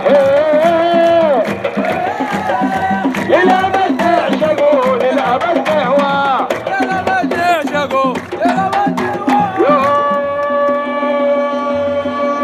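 Football fans' band in the stands: hand-held frame drums beating a steady rhythm under a loud, sliding melody line, which settles into one long held note near the end.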